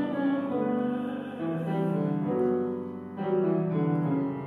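Grand piano playing a slow passage of held chords in an English art song while the voice rests, a new chord coming in about every second.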